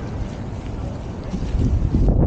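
Wind buffeting the microphone, a low rumble that grows louder near the end, with faint voices of people around.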